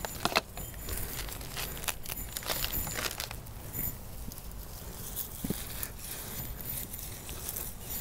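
Hands digging and scraping in the potting soil of a planter to make room for a plant's root ball. There is a run of short, scratchy rustles for about the first three seconds, then quieter rustling as the plant is set in.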